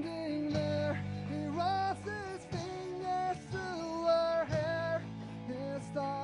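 Skate-punk rock band playing a song live: a full band with guitar, bass and drums going continuously.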